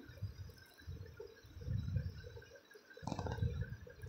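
Rice cooking in water in a steel pot on the stove, a faint low bubbling rumble that comes in irregular surges, with a short louder burst about three seconds in.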